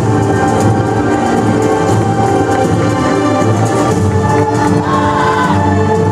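Loud, steady backing music with choral singing over an orchestral accompaniment.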